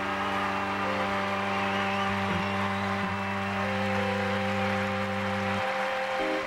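Live band music with long, steady held organ chords over a sustained low note; the low note stops near the end.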